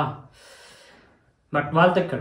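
A man's speech trails off, then a short breath drawn in through the mouth, then he starts speaking again about one and a half seconds in.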